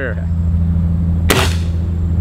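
A single shot from a break-barrel Swiss Arms TG-1 pellet rifle, a sharp crack about a second and a half in, over the steady low hum of an idling vehicle engine.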